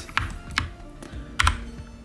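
A few sharp clicks of a computer keyboard and mouse, pressed one at a time as shortcut keys and clicks, with a pair close together near the middle.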